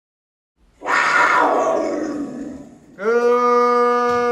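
A big-cat roar sound effect: one long, loud roar that fades away over about two seconds. About three seconds in, a loud steady pitched tone begins and holds.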